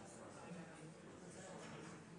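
Faint, indistinct murmur of a few people talking quietly in a large room, over a low steady room hiss.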